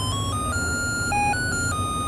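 Small speaker playing the built-in tune of a three-pin melody IC, amplified by a BC547 transistor: a thin, ringtone-like electronic melody of one plain note at a time, stepping to a new pitch every fraction of a second. The tone is clear and undistorted.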